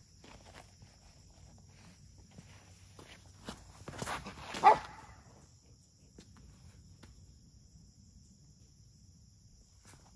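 Scattered footsteps on gravel, a short rustle, and a brief spoken 'oh' about four and a half seconds in. After that only faint outdoor background remains.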